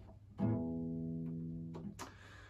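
A single open string plucked on an Alvarez AF30CE electro-acoustic guitar, played unplugged, to show its built-in tuner. The note comes in about half a second in, rings steadily for well over a second and is damped just before the end.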